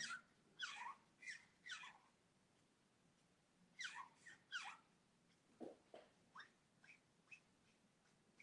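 Faint, short squeaks of an alcohol-based Copic marker's brush nib dragged over marker paper while blending red shading. About a dozen strokes at irregular intervals, each squeak falling in pitch.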